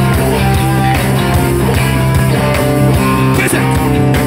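Live rock band playing loudly: distorted electric guitars, bass and drums in an instrumental passage with no singing.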